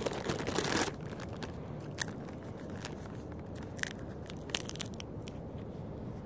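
A clear plastic bag of shell-on peanuts crinkling as a hand rummages in it for about the first second, followed by scattered sharp crackles.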